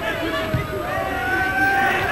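Football stadium crowd ambience with a long, steady held note standing out over the background noise.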